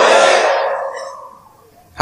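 A loud voice over a public address system trailing off, its echo fading away over about a second and a half to quiet.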